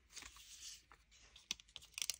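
Faint rustling and light clicking of small paper postage stamps being picked up and laid down on a paper board, with a few sharper clicks in the second half.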